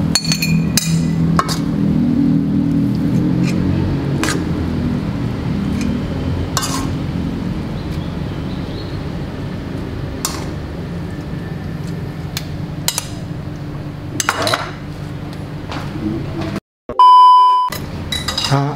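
Plates and utensils clinking now and then as cooked instant noodles are served from the pan onto plates, over a steady low hum. Near the end the sound drops out briefly, then a loud steady beep lasts about a second.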